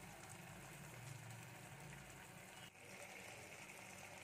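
Near silence: a faint, steady hiss of curry simmering in a clay pot, which keeps cooking on its own heat after the gas is turned off.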